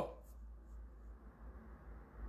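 A pause between spoken phrases, holding only faint background hiss and a low steady hum.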